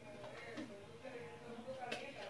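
Faint voices in the background, with one short click near the end.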